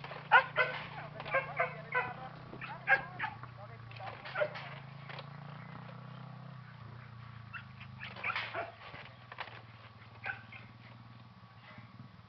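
Clusters of short, sharp calls over a low steady hum: a quick run in the first five seconds, and another burst about eight seconds in.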